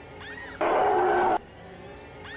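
A loud, steady pitched sound cuts in abruptly about half a second in and cuts off abruptly under a second later. Before it comes a quieter background with a few faint rising-and-falling chirps.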